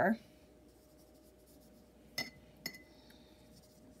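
A paintbrush clinking twice against the rim of the water cup, two sharp ringing clinks about half a second apart, as the brush is loaded with plain water for wetting the paper.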